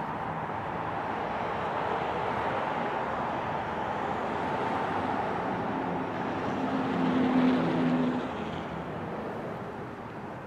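Diesel locomotive running at low speed with a steady engine hum, while a car passes close by and is loudest about seven to eight seconds in, then fades.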